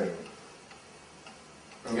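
A pause in a man's speech: faint room tone, with his voice trailing off at the very start and resuming near the end.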